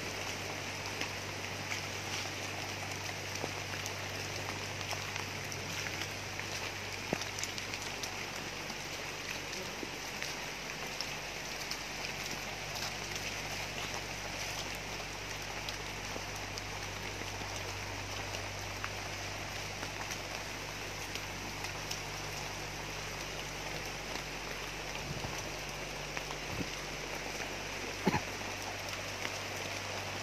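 Steady rain falling, with faint scattered drop ticks and a low steady hum underneath.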